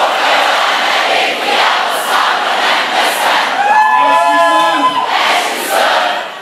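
A large crowd shouting and cheering together. A few voices hold a long shout for over a second, starting about three and a half seconds in.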